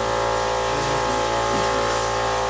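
Steady machine hum with several steady tones, holding level throughout.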